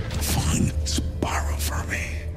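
A whispered voice with sharp hissing consonants over a low, steady rumbling drone, as in a movie-trailer soundtrack.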